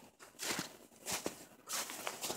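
Footsteps crunching in snow, three steps about two-thirds of a second apart.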